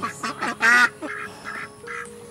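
Domestic fowl in the pen calling: one loud, drawn-out call about half a second in, then a run of short, nasal, quack-like calls about three a second.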